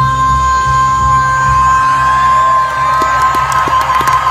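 A female singer holding one long, steady high note, a C5, over a jazz band. About halfway through, the audience starts cheering and whooping over the held note.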